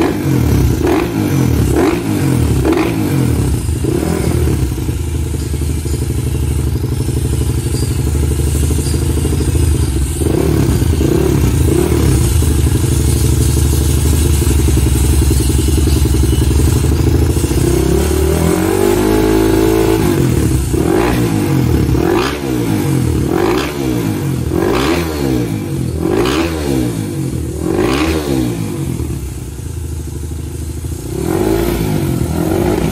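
Motocross bike engine revved by hand on the stand: quick throttle blips about once a second, then held at a steady speed for a long stretch, then a climb and a fresh run of blips about once a second.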